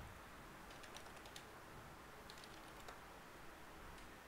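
Faint computer keyboard typing: two short runs of quick key clicks, about a second in and again past the two-second mark, over a quiet room hiss.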